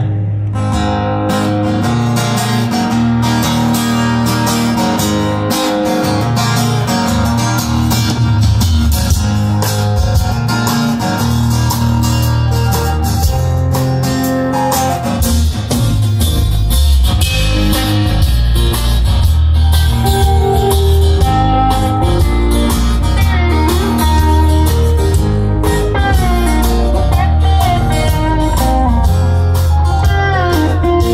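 Live band playing an instrumental passage through stage speakers: acoustic and electric guitars, keyboard, bass and drums, steady and loud throughout.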